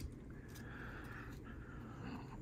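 Faint handling of trading cards: a light tick, then a soft sliding rustle of card stock lasting about a second.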